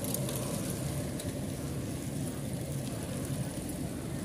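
Steady road noise as a group of bicycles rolls past on asphalt, with a few faint ticks in the first second and distant voices in the background.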